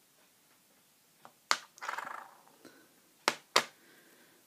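Makeup items being handled between steps: a few sharp clicks, a short rattle about two seconds in, and two quick, loud clicks near the end.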